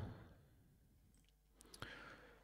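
Near silence with a few faint computer mouse clicks near the end.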